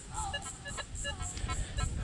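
Metal detector sounding short, faint tones as its coil sweeps the sand, a blip about every third of a second. The tones are typical of iron targets.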